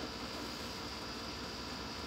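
Steady background hiss with a faint electrical hum and no distinct event: room tone.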